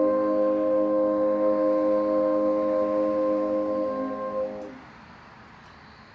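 French horn quartet sustaining a closing chord. The highest note drops out a moment before the others, and the chord releases about four and a half seconds in, leaving only faint background noise.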